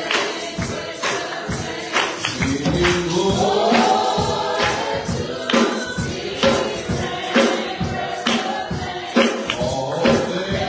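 Gospel music: voices singing a hymn over a steady beat of percussion struck about once a second.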